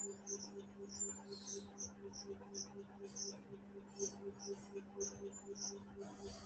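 Faint, short, high-pitched chirps, irregular at about three or four a second, over a steady low hum and a soft, rapid pulsing.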